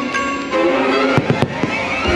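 Fireworks show soundtrack music with strings, over which fireworks bang: three sharp reports in quick succession a little past the middle.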